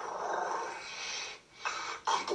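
A kitten hissing at a hand reaching to pet it. There is one long hiss of about a second and a half, then a short second hiss near the end.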